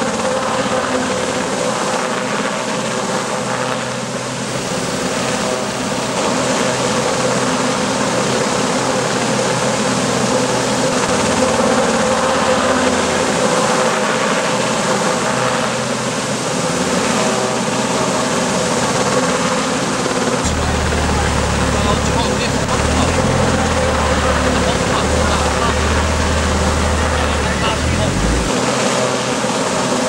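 Search-and-rescue helicopter overhead, a steady drone, mixed with people's voices. A deeper rumble joins for several seconds in the last third and cuts off suddenly.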